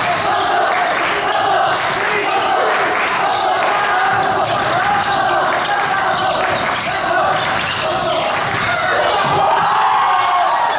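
Basketball being dribbled on a hardwood gym floor during play, repeated bounces echoing in a large hall, over a steady din of voices and sneaker squeaks.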